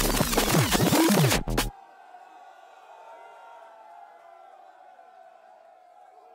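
Loud drum and bass track from the decks that warps and bends in pitch as the jog wheels are worked, then cuts out suddenly less than two seconds in. A crowd is then heard faintly cheering and whooping.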